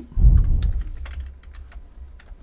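Computer keyboard keystrokes: a run of key clicks as a short line of code is typed. A low thump about a quarter second in is the loudest sound.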